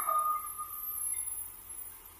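A clank of struck steel ringing on as one clear metallic tone, fading away over about a second and a half.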